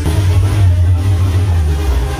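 Live Mexican brass banda playing loudly: sousaphones hold a heavy bass line under trombones and trumpets, with drums.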